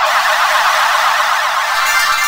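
Cartoon magic-spell sound effect: a loud, dense electronic shimmer of many tones warbling quickly up and down. Steady music joins in near the end.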